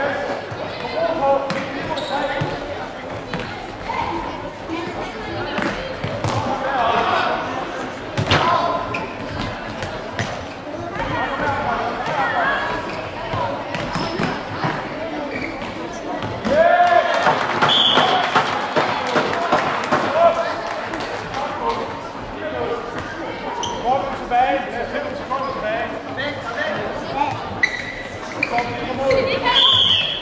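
Indoor hall football match: the ball is kicked and bounces on the hard hall floor with sharp knocks, under continual shouting and calling from players and spectators that echoes in the large hall. The voices grow louder for a few seconds just past the middle, and a short high whistle sounds twice, just past the middle and at the end.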